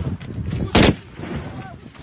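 A single loud gunshot a little under a second in, one of a run of shots fired every second or so in an exchange of gunfire.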